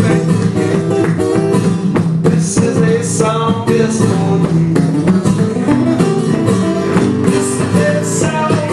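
Two acoustic guitars playing an instrumental passage of a live song, dense plucked notes over chords at a steady level.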